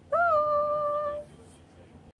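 A woman's voice calling a long, high, sing-song "Bye!", rising at the start and held steady for about a second, then quiet room tone.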